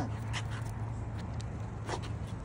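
A few soft scuffs and ticks of a man's shoes and a German Shepherd's paws moving on concrete, over a steady low hum.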